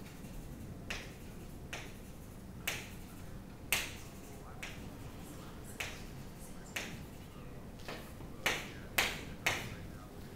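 Chalk striking a chalkboard while small orbital loops are drawn: about a dozen short, sharp knocks at uneven intervals, over a faint steady low hum.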